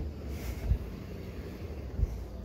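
Trunk lid of a 2006 Mazda RX-8 being unlatched and lifted open, with a short low thump under a second in, over a low wind rumble on the microphone.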